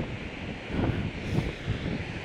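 Steady rushing of a large waterfall mixed with wind buffeting the microphone.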